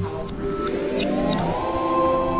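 Edited background music at a transition: the bass and beat cut out and a synth sweep rises steadily in pitch for about a second and a half, then holds one high note over sustained chords.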